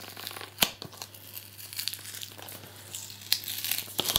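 Clear plastic security sticker being picked and peeled off a cardboard box by fingers: scattered crinkling and tearing, with a sharp click about half a second in and another near the end.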